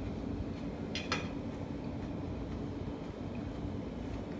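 Two light clicks of cutlery against a plate, close together about a second in, over a steady low hum.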